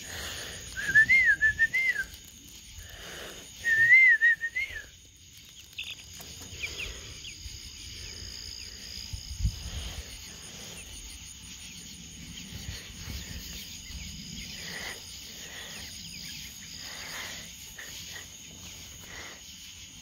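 Two warbling whistles, each about a second long, in the first five seconds, the pitch wavering up and down. After them comes faint, steady cricket chirring with a few soft knocks.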